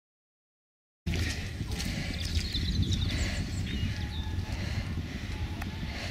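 Silence for about a second, then a steady low rumble of wind on the microphone, with small birds chirping and singing high above it.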